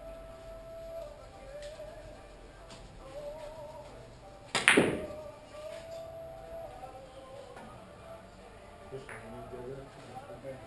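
A single loud, sharp clack of heavy Russian-billiards balls as a cue shot is played, about halfway through, ringing out briefly. A few faint ball clicks come in the background.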